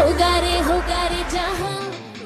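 Indian pop song with a sung melody over a steady bass. The bass drops out about a second and a half in, and the music fades toward the end.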